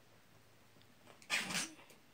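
A ferret sneezing once, a short hissy burst about a second and a half in.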